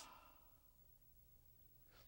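Near silence: room tone with a faint steady low hum, after the last word fades out in the first moment.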